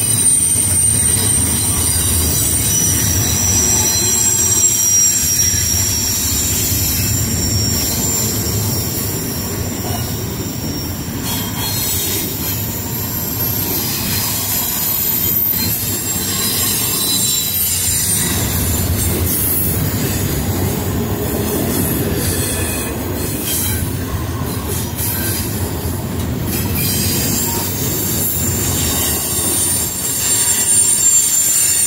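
Double-stack intermodal container train rolling past at close range: a steady rumble of steel wheels on rail, with a high, wavering wheel squeal above it and scattered clicks as wheels cross rail joints.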